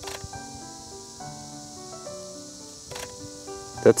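Background music: a soft melody of held notes that change in pitch, with a couple of faint clicks.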